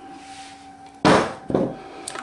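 Blended vegetable purée pouring faintly onto taboulé grain in a glass bowl. About a second in come two sharp knocks of kitchenware on a wooden table, half a second apart, the first louder.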